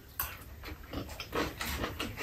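Two people eating close to the microphone: chewing and smacking mouth sounds, with a few short sharp sounds.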